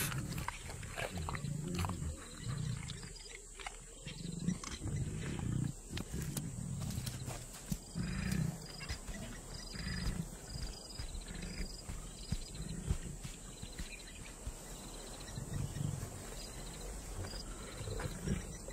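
Lions growling, a series of short, low grunts about a second apart.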